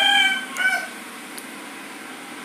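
A rooster crowing: a high, held call with a short final note that ends under a second in.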